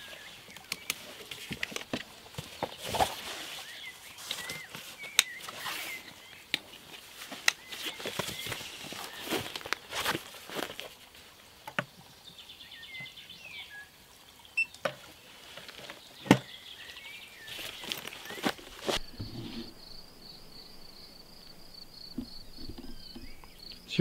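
Handling noise from packing up a folding portable solar panel and unplugging its cable from a portable power station: scattered clicks, knocks and rustles. In the last few seconds, crickets chirping in a fast, even trill.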